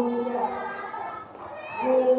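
Group of schoolchildren singing together in held, steady notes that fade to loose chatter about halfway through, with the group singing resuming near the end.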